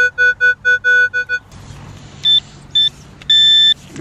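Metal detector's audio signal tones as the coil is swept over a freshly dug hole. There is a quick run of about seven short low-pitched beeps, then two short high-pitched beeps and a longer high tone near the end.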